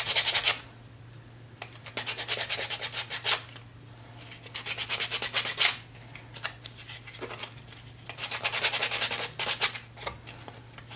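Hand-sanding the edges of a white-painted wooden block with a small piece of sandpaper: quick back-and-forth rasping strokes in short bursts of one to one and a half seconds, with pauses between. The edges are being sanded to distress the paint so the block looks aged.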